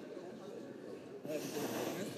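Indistinct murmur of many senators and aides talking at once on the chamber floor, no single voice standing out. It grows louder and hissier a little over a second in.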